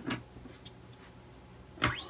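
Handling noise from threading a steel guitar string into its tuning post: a small click at the start, faint fiddling, and a sharper scrape of the string near the end.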